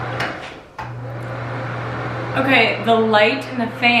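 A fan's steady low hum, which drops out for a moment just before a second in and then resumes.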